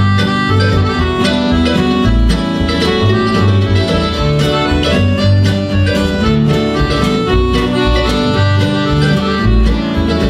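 Acoustic string band playing an instrumental passage with no singing: mandolin, acoustic guitar, piano accordion and upright double bass, the bass plucking a steady low line under sustained melody notes.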